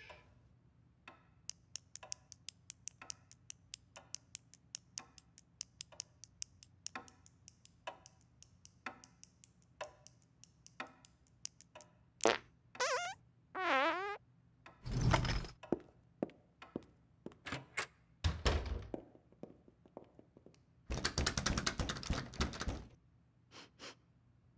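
Cartoon sound effects in an otherwise silent scene: sharp ticking about twice a second for the first half, then two short squeaky sounds that slide up and down in pitch, a few heavy thumps, and a rough noise lasting about two seconds near the end.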